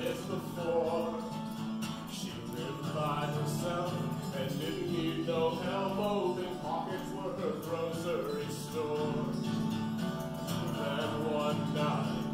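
A man singing a storytelling folk song.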